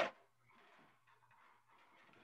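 A short knock right at the start, then faint handling sounds as a ceramic plate is lifted down from a kitchen wall cupboard.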